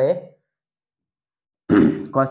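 Only speech: a man's voice trails off in a drawn-out sound at the start, followed by dead silence, then he begins speaking again near the end.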